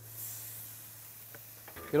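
Barbecue-sauced fish pieces sizzling on a hot gas grill grate: a soft, high hiss that fades within about a second.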